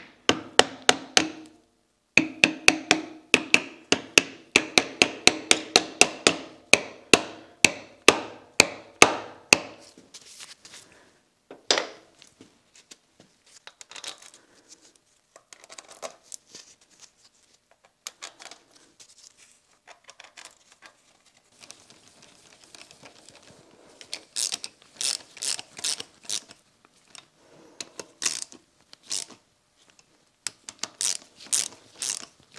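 Soft-faced mallet tapping a part into place in a milling machine's cast-iron saddle: a rapid run of sharp, ringing blows, about three a second, for the first ten seconds. Then scattered quieter knocks and clinks of metal parts being handled, with another short cluster of blows near the end.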